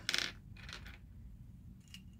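Small plastic miniature kitchen toys clicking and clattering against each other in a short burst as hands rummage through a pile of them, followed by faint handling noise.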